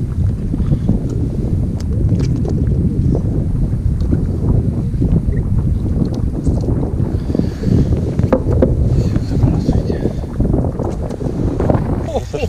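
Wind buffeting the microphone on an open boat at sea: a loud, continuous low rumble that gusts and chops unevenly, with a few short clicks.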